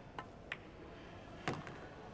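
Pool shot: a light click of the cue tip on the cue ball, a sharper click of the cue ball striking the object ball, then about a second later the loudest knock as the ball drops into the pocket, with a small click after it.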